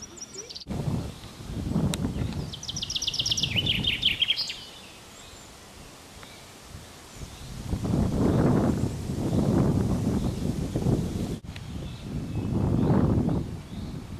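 Wind buffeting the microphone in irregular gusts. A songbird gives a rapid trill of repeated high notes, stepping down in pitch, about two to four seconds in.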